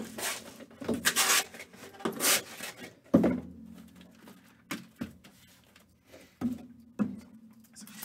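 Cardboard trading card boxes being handled: rustling and sliding in the first couple of seconds, then several light knocks as the boxes are moved and set against each other.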